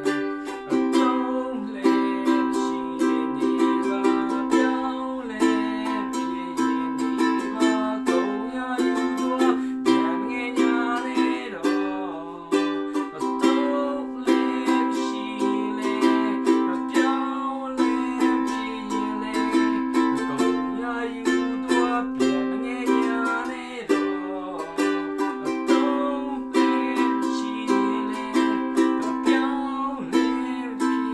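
Ukulele strummed in a steady rhythm, playing a chord accompaniment to a song.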